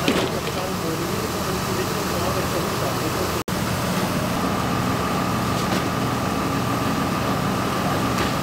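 Fire engine engine running steadily, with faint voices. A steady higher whine joins it about halfway through.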